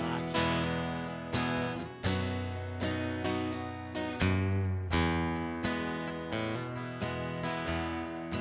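Solo acoustic guitar strumming the slow intro of a country song, a new chord about every second, each left to ring and fade.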